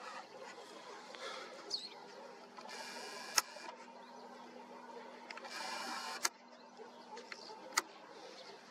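A superzoom camera's lens zoom motor running in two short spells of under a second each, each ending in a sharp click, faint against quiet surroundings.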